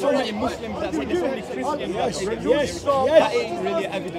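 Speech only: a voice further from the microphone is talking, with crowd chatter around it.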